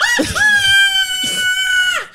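A woman's long, high-pitched squeal, held on one slightly falling note for over a second and then cut off abruptly.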